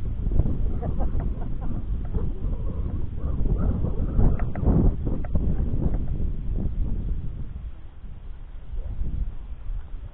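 Wind buffeting the microphone: a rough, low rumble that eases off a few seconds before the end.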